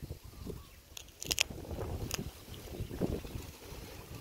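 Wind rumbling on the microphone outdoors, with a few sharp clicks and crackles of handling about a second in and again near two seconds.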